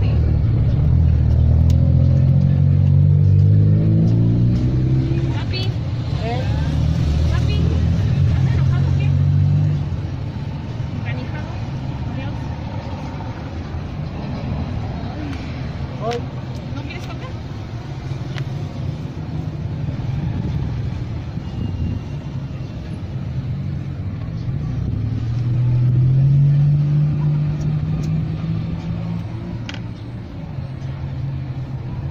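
Street traffic: a motor vehicle's engine runs past loudly for the first ten seconds, its pitch rising as it accelerates, and another vehicle accelerates past near the end, with a few small clicks in between.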